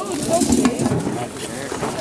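Voices talking in the background, with a single short click under a second in.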